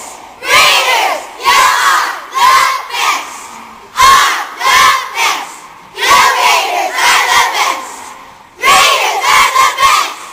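A group of young girls shouting and cheering together in loud bursts, about one a second.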